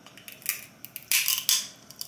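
Close-up eating sounds: seafood being bitten and chewed, with a few short crisp clicks and crackly crunches about half a second in and again from about a second in.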